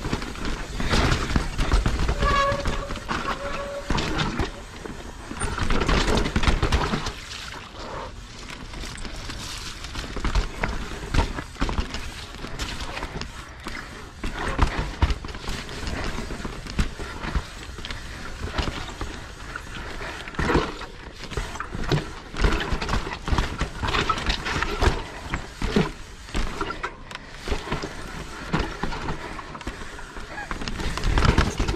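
Mountain bike descending a very rough, rocky trail: a dense, uneven clatter of knocks and rattles from the bike and tyres hitting rocks and roots, over the rush of the tyres on dirt.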